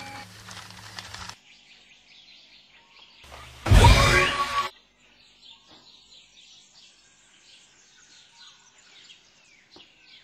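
Small birds chirping with many short, falling calls. About four seconds in a loud, deep sound effect lasts about a second, and a low pulsing hum cuts off suddenly just over a second in.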